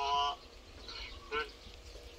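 A person's voice in short snatches: a brief held vowel at the start and another short sound about one and a half seconds in, with quiet between.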